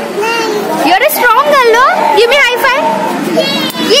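Young children's voices talking and calling out, high-pitched and swooping up and down in pitch.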